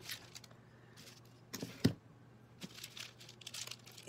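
Deli paper crinkling and rustling as hands press and handle it, with a few sharp taps, the loudest a little under two seconds in.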